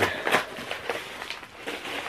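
Paper envelope rustling and crinkling in the hands as a mailed package is opened, in short irregular crackles.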